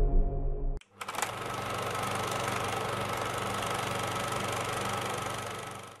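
The tail of a low music sting dies away, then a film projector starts running about a second in with a fast, steady mechanical clatter, fading out near the end.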